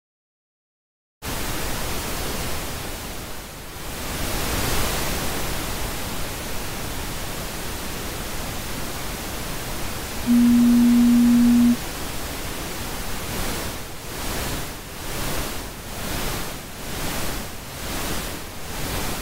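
Psychosynth software synthesizer's noise generator hissing, starting about a second in, with a brief swell a few seconds later. Around the middle a steady pitched tone sounds for about a second and a half, louder than the noise. From about two-thirds of the way through, the noise pulses up and down in a regular rhythm, about one and a half pulses a second.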